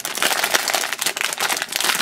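Foil blind bag crinkling and crackling in the hands as it is pulled open, a dense run of rapid crackles.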